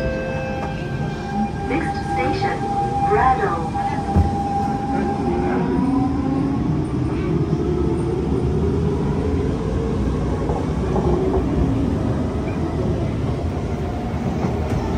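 Siemens C651 metro train pulling out of an underground station. The traction motors' whine climbs steadily in pitch for several seconds as the train gathers speed, over a constant running rumble, with some clatter in the first few seconds.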